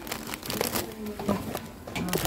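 Groceries being handled in a wire shopping cart: plastic packaging rustling, with light knocks as tins are moved. A short spoken "aga" comes about a second in.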